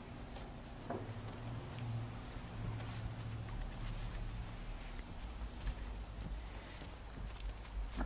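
Faint crunching footsteps in snow as a toddler and a dog walk, a scatter of small irregular crunches over a low steady rumble.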